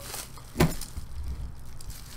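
Quiet handling of a bubble-wrapped package, with one sharp crack a little over half a second in.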